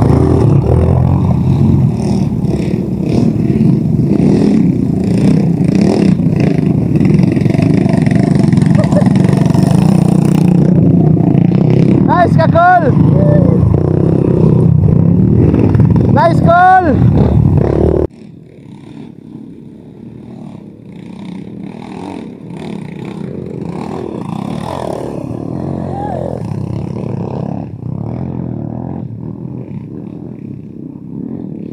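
Dirt bike engine running close by, with short voice calls over it. About eighteen seconds in, the sound drops suddenly to a quieter, more distant dirt bike engine that slowly grows louder as the bike climbs the rocky trail.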